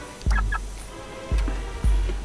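Cartoon episode soundtrack: quiet music with three deep, sudden bass thumps. Two short high chirps come at about a third and half a second in.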